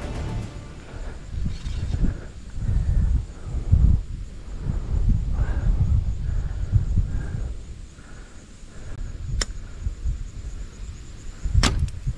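A compound bow is shot at full draw: the string releases and the arrow flies, with background music carrying low, heartbeat-like thumps. Two sharp cracks come near the end.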